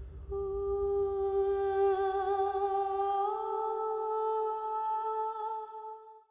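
Background score: a single humming voice holds one long note, then steps up to a slightly higher note about three seconds in and holds it until the music cuts off at the end.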